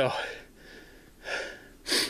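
A man breathing hard through an open mouth, winded from climbing a steep hill: a long exhale at the start, another breath about a second and a half in, and a sharp, loud breath near the end.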